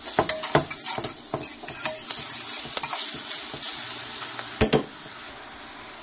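Chopped shrimp, onions, celery and garlic sizzling in a hot metal frying pan while a utensil stirs and scrapes against the pan, with two sharp knocks about four and a half seconds in. The stirring stops near the end, leaving the sizzle alone.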